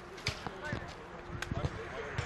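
Football being kicked and bouncing on artificial turf: several short thuds, three in quick succession about a second and a half in, with players' voices calling across the pitch.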